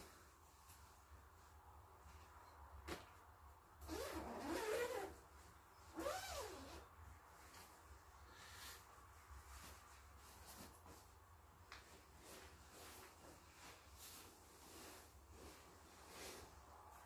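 Faint rustling of a down sleeping bag's nylon shell as a man climbs into it, with a click about three seconds in and two short grunts that rise and fall in pitch, about four and six seconds in.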